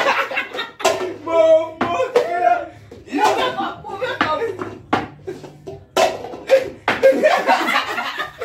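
Laughing and excited shouting, with short sharp knocks of red plastic cups being flicked and landing on a wooden table during a flip-cup race.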